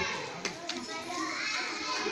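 Many children chattering at once in the background, with two short faint clicks about half a second in.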